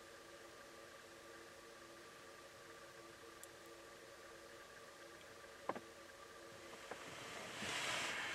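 Faint, distant car engine running steadily, a low hum with several held tones that fades out about six and a half seconds in. Two sharp clicks come near the end.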